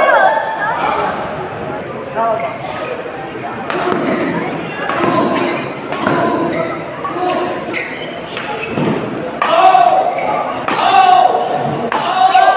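Badminton rackets striking the shuttlecock in a rally, sharp hits about a second apart, echoing in a sports hall. Voices shout over the hits, loudest near the end.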